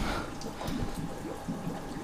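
Faint trickling and dripping water from a wet cartridge water-filter housing as it is gripped and handled, with light scattered taps.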